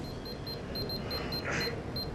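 SybronEndo Apex ID apex locator beeping in short, high pips, about four a second, as it tracks a file in the root canal. A brief hiss comes about one and a half seconds in.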